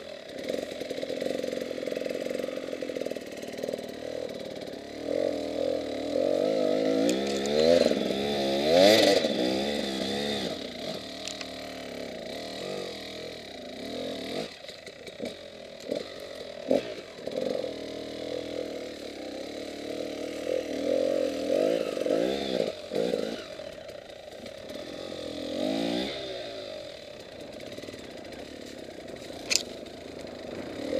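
Enduro motorcycle engine revving up and down in surges as the rider works it over rough ground. The pitch swings highest about nine seconds in and again near twenty-six seconds. A few sharp knocks and clatters come from the bike hitting the terrain.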